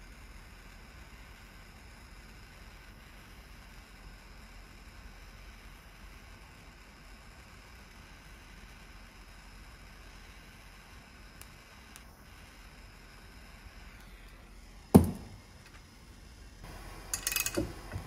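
Handheld propane torch hissing steadily as it heats the aluminium secondary clutch to ease out a pressed-in roller pin; the hiss stops about fourteen seconds in. A single sharp, loud knock follows a second later, then metallic clinking near the end.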